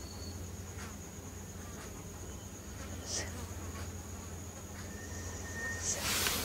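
Steady low hum with a thin, constant high-pitched whine, the kind of electrical noise that sits under a close-miked recording, broken only by a couple of faint soft clicks about one and three seconds in.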